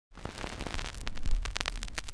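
Crackling static noise with many scattered clicks and a low rumble that swells about halfway through: a glitchy title-card sound effect.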